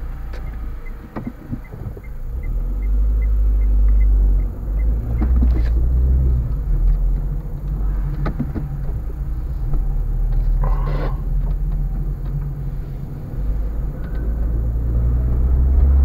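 Car cabin sound while driving slowly: a steady low engine and road rumble. A light, regular ticking of about four ticks a second runs through the first few seconds, and there is a short rustling burst about 11 seconds in.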